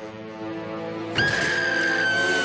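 A cartoon character's short laugh over background music, then a sudden louder musical cue about a second in, with one high note held steady.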